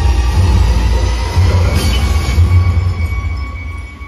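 Action-film soundtrack played loud through a 5.1 surround home-theater system: a heavy, deep rumbling sound effect with a hissing swell about two seconds in, dying away near the end.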